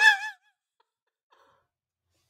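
A woman's laugh trailing off in a breathy exhale about a third of a second in, then near silence.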